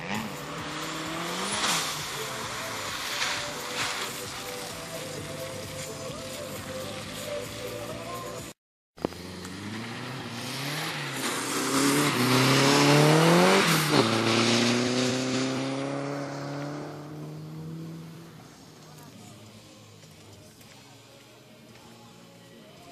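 A car engine revving hard, its pitch climbing and dropping repeatedly, with tyre noise on wet asphalt. The sound cuts off abruptly about nine seconds in. It resumes with the engine climbing to its loudest peak about two-thirds of the way through, then falling and fading away.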